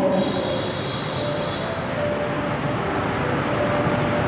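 Steady rushing rumble with a faint high whine through the first half, like a vehicle or train running.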